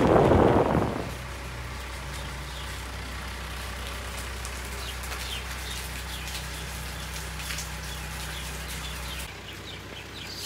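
For about the first second, loud road and rain noise inside a moving car, which cuts off abruptly. After that comes a much quieter steady low hum with faint scattered high ticks, in wet weather.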